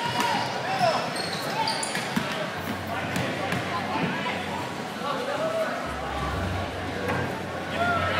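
A basketball bouncing on a hardwood gym floor, with crowd voices chattering.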